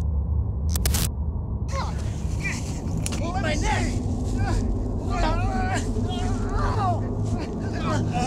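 Men's voices shouting and calling out, with no clear words, over a steady low rumble; a couple of sharp clicks come about a second in.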